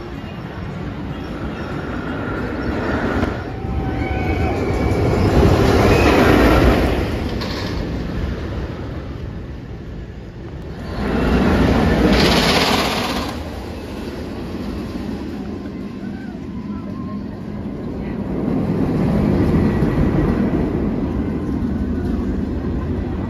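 Roller coaster trains rumbling along steel track, the noise swelling loudly three times as trains pass close.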